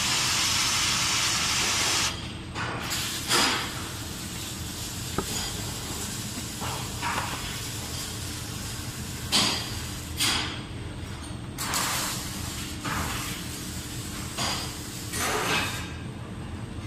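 Liquid CO2 jetting from a dip-tube cylinder into a cloth bag, a loud steady hiss as it flashes into dry-ice snow, cut off sharply about two seconds in. Scattered short rustles and knocks follow.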